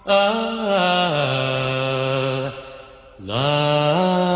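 Slow vocal music: a single voice holding long notes that slide down between pitches, breaking off briefly before rising into a new note about three seconds in.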